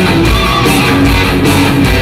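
Heavy metal band playing live at high volume: electric guitars strummed over drums and bass.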